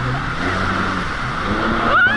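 Jet ski engine running under way, with rushing water spray and wind noise.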